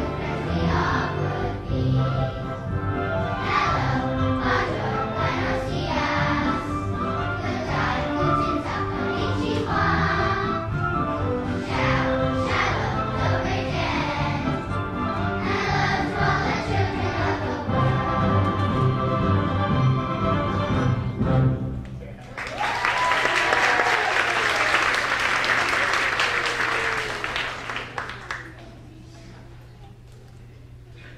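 Children's choir singing with instrumental accompaniment. About three quarters of the way through, the song ends and the audience breaks into applause, which dies away near the end.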